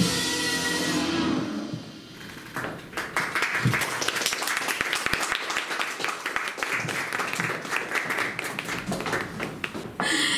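A pop song's music ends over the first second or two, then an audience claps steadily for the rest of the time.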